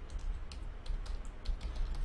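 Computer keyboard keystrokes: a quick, irregular run of key presses as a short line of code is typed.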